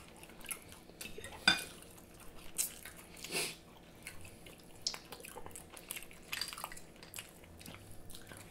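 Close-miked eating: chewing food, with scattered light clicks of metal forks against plates; the sharpest click comes about a second and a half in.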